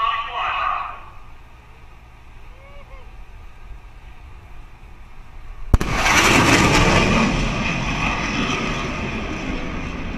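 An F/A-18 fighter flying past at supersonic speed. About six seconds in, a single sharp sonic-boom crack is followed by a loud rushing jet roar that slowly dies away.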